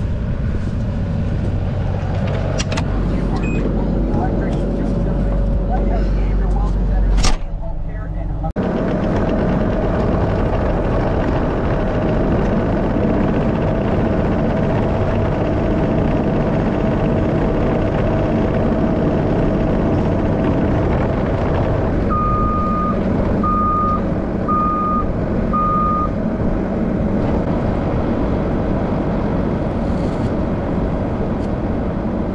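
A New Holland compact track loader's diesel engine runs steadily while it carries a round hay bale on its bale spear. Near the end, its reverse alarm sounds four short beeps about a second apart.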